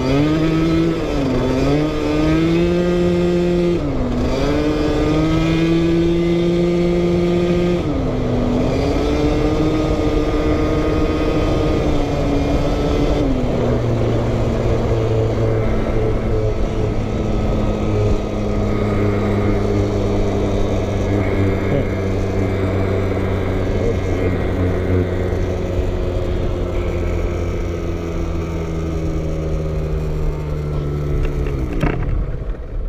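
Scooter with a TPR 86cc big-bore kit on its two-stroke Minarelli engine, under way: the engine note dips and climbs back three times in the first eight seconds as the throttle is eased off and reopened. About thirteen seconds in it drops to a lower, steady note while cruising.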